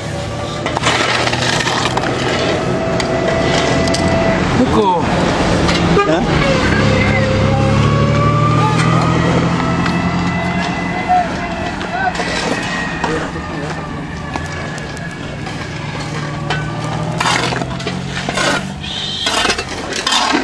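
A vehicle engine runs with a steady low hum while driving along the road, with voices and scattered clicks over it.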